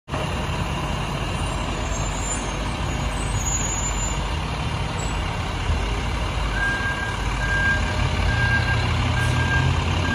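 Diesel fire engines running with a steady low rumble that grows a little louder near the end. About six and a half seconds in, a vehicle's reversing alarm starts beeping at an even pace, about one beep a second.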